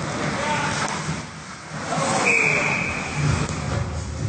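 Ice hockey play on a rink: skates scraping on the ice amid rink noise and voices, then a single steady whistle blast a little past halfway, lasting about a second.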